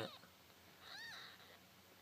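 A newborn kitten gives a single faint, short, high-pitched mew about a second in, its pitch rising and then falling.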